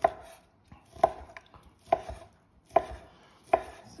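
A kitchen knife chops through sliced cold roast pork and knocks on a wooden cutting board: five sharp chops, a little under a second apart.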